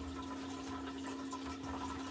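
Aquarium filter running: a steady trickle of water over a constant low hum.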